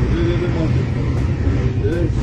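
Steady low rumble of a vehicle's engine and road noise heard from inside the moving vehicle, with men's voices over it.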